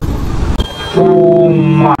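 Riding noise of a motorcycle in traffic, wind and engine rumble. About a second in, a man's voice starts a long, drawn-out exclamation that holds one pitch.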